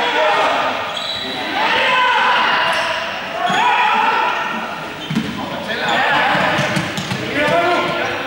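Several young people's voices shouting and calling out during a running game, echoing in a large sports hall, with scattered thuds on the wooden floor, mostly in the second half.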